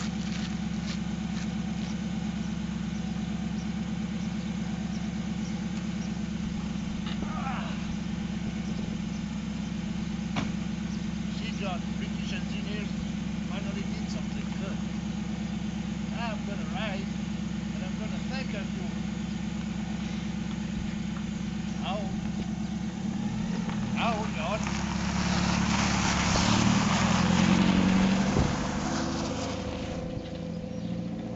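A Morgan sports car's engine idles steadily, then revs as the car pulls away about 23 seconds in. Its tyres crunch loudly over gravel, and the sound fades as it drives off near the end.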